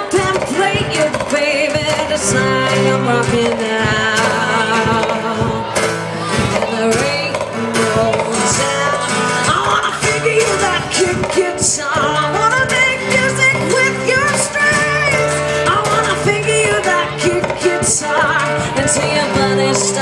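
A woman singing live with wavering held notes over a strummed acoustic guitar.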